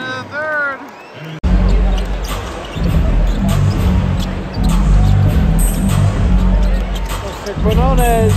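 Arena music with a heavy bass beat plays loudly over a live basketball game, with a ball being dribbled on the hardwood court. Near the start a few short rising-and-falling pitched calls sound. About a second and a half in, the sound jumps abruptly louder at an edit.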